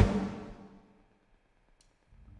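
A live band's last chord ringing out and fading away within the first second, then near silence.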